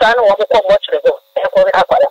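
Speech only: a voice talking continuously.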